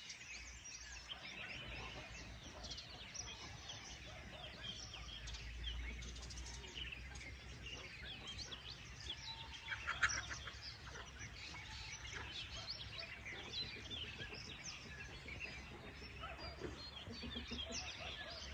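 Many birds chirping and calling at once, a faint, dense chatter of overlapping high chirps, with one louder call about ten seconds in.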